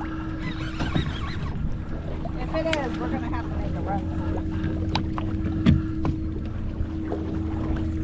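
Boat engine idling with a steady hum, joined by a few light clicks and knocks. Faint voices can be heard now and then.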